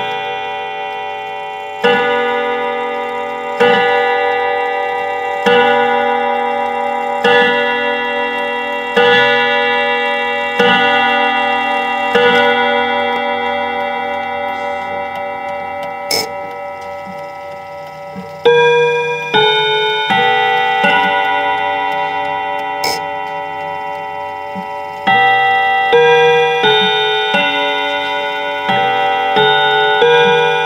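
Mechanical clock's hammers striking its metal chime rods: a series of ringing chimes about every second and a half to two seconds, each left to ring on, with the clock ticking underneath. The chiming dies away after the first half and starts again in two more runs of strokes.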